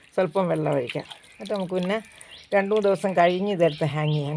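Speech only: a woman talking in several short phrases.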